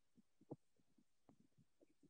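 Near silence, with a few faint short sounds, the most noticeable about half a second in.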